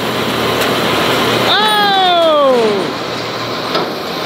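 A John Deere tractor and round baler running steadily as the raised tailgate lets a fresh round bale out. About a second and a half in, a voice gives one long exclamation that falls in pitch.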